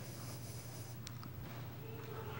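Quiet pause: a steady low electrical hum in the room, with faint handling rustle and a light click about a second in.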